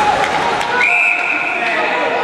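Ice hockey referee's whistle: one long, steady, high-pitched blast starting about a second in, stopping play, over people's voices.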